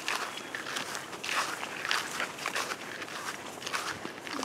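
Footsteps swishing through tall grass at a steady walking pace, two people walking one behind the other.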